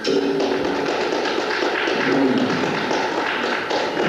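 Audience clapping steadily in a hall, starting right as the band's final held chord breaks off.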